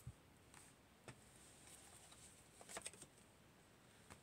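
Near silence, with a few faint light clicks of tarot cards and a hand moving on the table: one just after the start, one about a second in, and a small cluster near three seconds.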